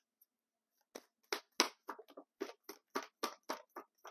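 A deck of oracle cards being shuffled by hand: a quick run of about a dozen short card slaps, about four a second, starting about a second in.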